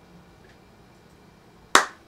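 Quiet room tone, then one sharp snap of the hands near the end that rings out briefly.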